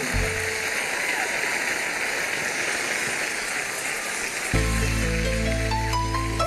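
Applause from the studio audience and judges, then about four and a half seconds in a live band starts its introduction with a held low chord and a few notes stepping upward above it.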